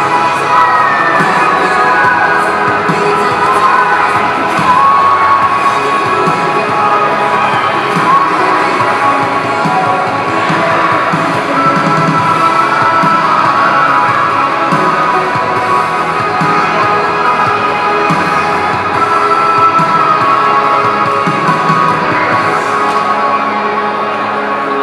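Recorded song with band and voices playing loudly through a PA loudspeaker, with cheering crowd voices heard along with the music; it eases off slightly near the end.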